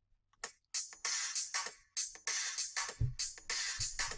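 A sampled drum loop playing back after being time-stretched in MPC software from 128 down to 98 BPM. It starts about half a second in as a quick run of sharp hits, with two deep hits near the end.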